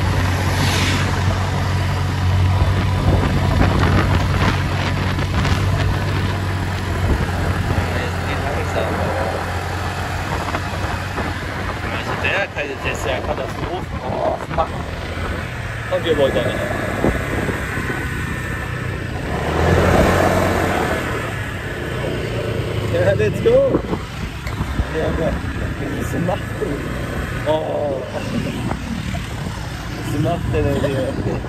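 Motor scooter engine running steadily under way, with wind rushing over the microphone. In the second half, muffled voices come through the engine and wind noise.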